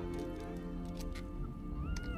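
Tense film score of sustained tones, with a woman's muffled, gagged whimper rising and falling near the end.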